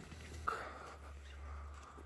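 Quiet outdoor ambience with a steady low rumble and a faint, drawn-out distant call that starts about half a second in and lasts about a second.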